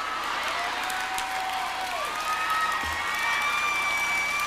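Large arena audience applauding and cheering, with a few long held tones standing out over the clapping.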